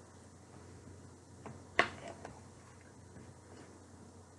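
A metal fork clicking against a black plastic TV dinner tray: a few sharp clicks about halfway through, one much louder than the rest.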